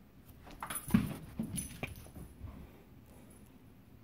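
A dog dashing off across carpet: a quick flurry of paw thuds and scrabbling, loudest about a second in, with its metal collar tag jingling. It dies away by about two and a half seconds in.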